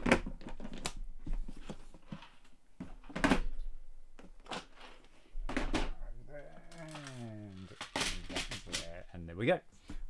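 Loose plastic LEGO Technic pieces clattering and rattling in a parts drawer as someone rummages through it: a run of sharp clicks and knocks, loudest a few seconds in.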